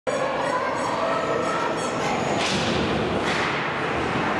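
Ice hockey play in an indoor rink: skates scraping the ice, with two sharp hisses about halfway through, over a steady rink din with stick and puck knocks and onlookers' voices.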